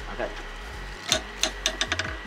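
Plastic counters of a giant wooden Connect Four game clacking, with several quick sharp knocks in the second half.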